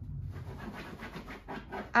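Small dog digging at a fabric cushion with its front paws: a continuous rapid scratching and scuffling.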